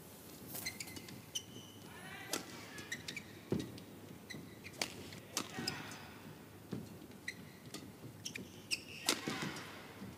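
Badminton rally: sharp racket strikes on the shuttlecock, coming at irregular intervals, mixed with short high squeaks of players' shoes on the court.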